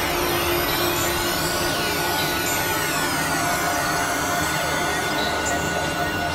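Experimental electronic synthesizer drone-noise music: a dense, hissy drone with many criss-crossing high tones gliding up and down, and a steady high tone that comes in about half a second in.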